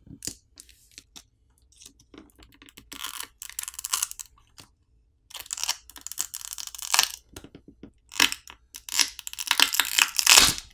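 Poco M4 5G's orange battery pull tab and the adhesive beneath being pulled and peeled to free the battery: crinkling, tearing crackles in three bursts with small clicks between.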